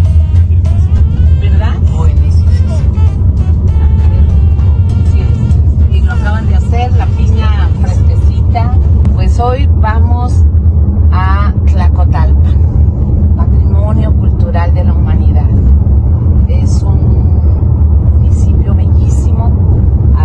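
Steady low rumble of a car on the road, heard from inside the cabin, under a woman's talking and background music.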